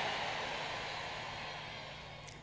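Faint, even hiss of background noise that fades slowly and steadily lower, with no distinct events in it.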